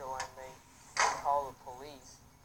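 Voices from a video playing back through a smartphone's speaker, with a loud sharp sound about a second in.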